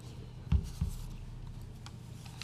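Paper rustling and handling on a table close to a microphone, with two dull low thumps about half a second in.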